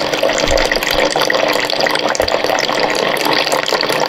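A thin stream of water pouring steadily from a SimPure countertop reverse-osmosis dispenser's spout into a plastic measuring cup. This is the flush cycle, which purges the machine's internal tank of its first water.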